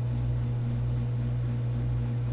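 A steady low electrical or mechanical hum, with a fainter higher tone above it that pulses on and off.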